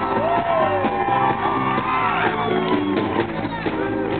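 A live soul band plays loudly while voices in the crowd shout and whoop over the music.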